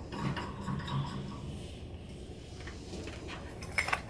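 Faint metallic ticking and rubbing as the brass arbor of a Wheeler-Rex hot tap tool is threaded by hand into the tool body. The ticks cluster in the first second, thin out, and there is a single click near the end.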